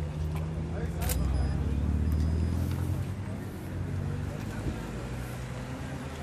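Low rumble of road traffic that swells briefly about a second in, under the voices of bystanders, with one sharp click.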